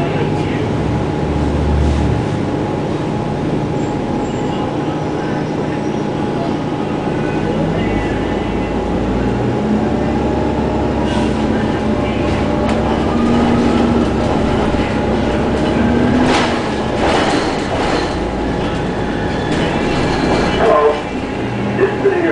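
Inside an Orion VII Next Generation hybrid-electric transit bus on the move: a steady whine and rumble from the drive and road, with a whine that rises in pitch as the bus picks up speed about halfway through. There are a few rattles near the end.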